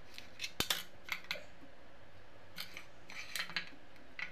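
Small scissors snipping into a ball of dough to cut a decorative pattern, a series of short, irregular snips and clicks.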